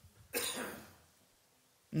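A single short cough, a sudden noisy burst that fades out within about half a second.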